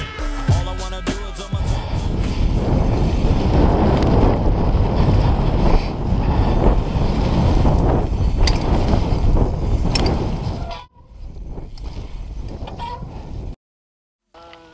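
Wind rushing over an on-board camera microphone while a downhill mountain bike rattles over a rough, muddy trail at speed, with sharp knocks from bumps. Near the end the rushing drops to a quieter patter of clicks, then the sound cuts out briefly.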